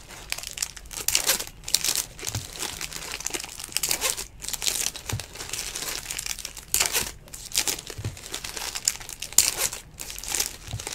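Foil wrappers of 2019 Bowman baseball card packs crinkling in irregular bursts as they are torn open and handled.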